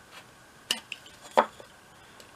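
Knife blade cutting into the end of a soft pine block, paring away waste: two short sharp clicks about two-thirds of a second apart, the second louder.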